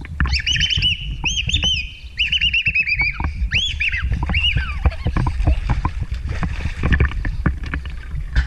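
A bird singing a quick run of short chirping notes, about six a second, through roughly the first half, then fading out. Under it, water sloshing and splashing around the camera.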